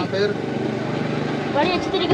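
An engine idling steadily, a low, even hum between bursts of speech.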